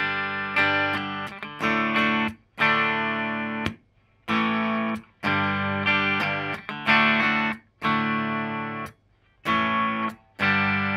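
Electric guitar with a Dean Baker Act humbucker (Alnico 5 magnet, 17.3K ohms) in the bridge position, strummed through a clean amp. Chords are struck about once a second, each ringing briefly before being muted, with a couple of short pauses. The tone is nice, even and smooth, with more mid-range.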